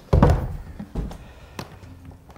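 Handmade wooden case being opened: a heavy thunk of wood just as it starts, then a couple of light knocks and clicks.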